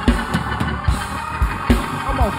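Live church praise-band music: a drum kit keeps a fast, steady kick-drum beat under a dense wash of instruments.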